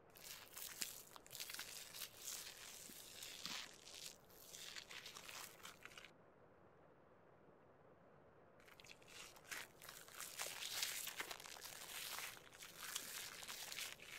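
A straight razor scraping through foam-covered beard stubble in dense, crackly strokes. One run of strokes lasts about six seconds, then after a short pause a second run begins and carries on.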